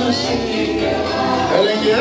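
Music with several voices singing together over an accompaniment.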